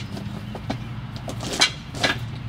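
Knocks and scrapes of a terracotta garden ornament being handled and set in place on gravel, with one sharp knock about a second and a half in, over a steady low hum.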